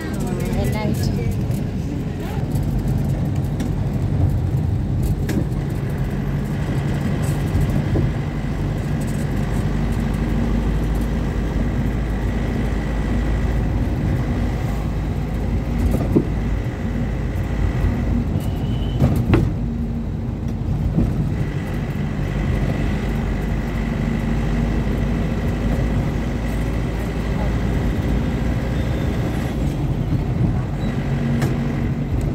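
Engine and road noise of a moving road vehicle: a steady low drone, with a faint high whine that comes and goes and a few brief knocks.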